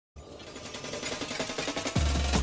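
A fast, even mechanical clatter that grows louder, with a low thud right at the end as music comes in.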